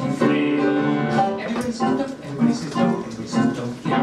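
A man singing a show tune with piano accompaniment.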